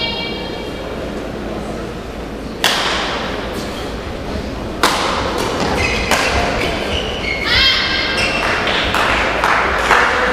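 Badminton rally: sharp racket strikes on a shuttlecock, the first about two and a half seconds in, then a quick exchange of hits from about five seconds on. Short high squeaks around the eighth second, typical of shoes on a court floor, over the steady hum of a hall.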